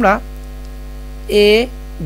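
Steady electrical mains hum on the recording, a low drone with a row of fainter higher tones above it. It runs without a break under two short spoken words.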